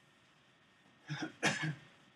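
A person coughing twice in quick succession, about a second in, the second cough louder.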